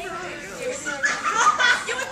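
Indistinct chatter: several voices talking over one another at once.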